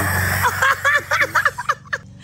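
A child and a woman laughing together in a quick run of short giggles, starting about half a second in, over a steady low hum.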